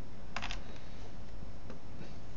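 Computer keyboard keys clicking: a short key click about half a second in and a fainter one near the end, over a steady background hiss.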